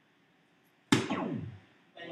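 A soft-tip dart hits a DARTSLIVE electronic dartboard about a second in, and the machine answers with its hit sound effect: a sharp hit followed by electronic tones sliding down in pitch for about half a second, as it registers the score.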